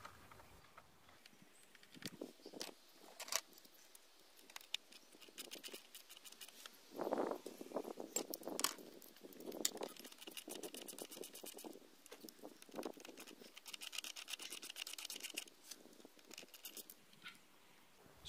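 Faint, scattered clicks and plastic knocks as a ratchet and gloved hands work the screws of a car's plastic air filter housing, with several short runs of rapid ratchet clicking.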